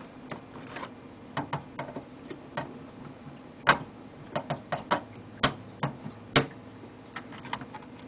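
Irregular small metallic clicks and ticks of a screwdriver and screw against the steel hard-drive bracket of a computer case while a screw is being fitted, with a few louder clicks from the middle onward.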